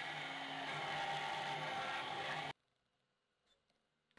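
Hand-held stick blender running steadily as it purées roasted red pepper and feta in a tall cup. The sound cuts off abruptly about two and a half seconds in.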